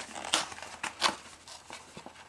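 A cardboard model kit box being handled, giving a few light taps and paper or cardboard rustles, the two loudest about a third of a second and a second in.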